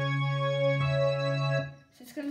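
Yamaha digital piano playing a low note, held steadily with the same note an octave below, and another note struck about a second in; the notes are released shortly before the end.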